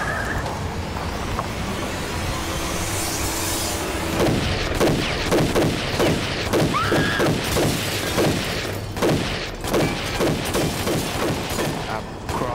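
Assault rifle fired in a long run of shots, about two to three a second, starting about four seconds in after a steady low rumble.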